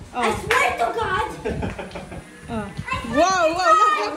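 Children talking and calling out excitedly, ending in a long, wavering high-pitched cry that is the loudest part.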